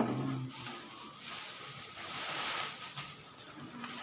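Plastic carrier bags rustling as they are handled and carried, a soft crinkling hiss that swells and fades, after a short low sound right at the start.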